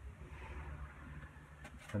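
Faint soft brushing of a wet watercolour brush over paper, over a low steady hum, with a couple of small clicks just before speech resumes.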